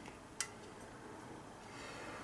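Quiet room tone with a single short, faint click a little under half a second in.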